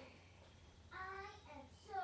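A girl's voice: a short held, sung-sounding note about a second in, then the start of a spoken "so" near the end, over a faint steady hum.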